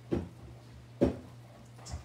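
Two short, light knocks about a second apart, as painting supplies are handled on a work table.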